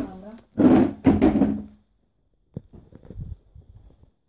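A child's voice in two short, loud bursts, then a few faint knocks and handling sounds.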